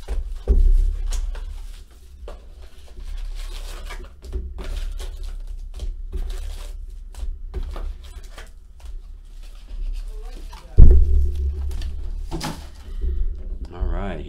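Hands handling an opened cardboard hobby box and its foil-wrapped trading card packs: scattered clicks, scrapes and crinkles, with a thump about half a second in and a heavier thump, the loudest sound, near 11 seconds as the box or packs meet the table.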